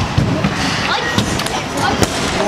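Scooter wheels rolling on a skatepark ramp, with several short knocks and thuds from the scooter as it rides.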